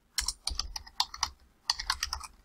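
Typing on a computer keyboard: a quick run of keystrokes, with a brief pause about one and a half seconds in.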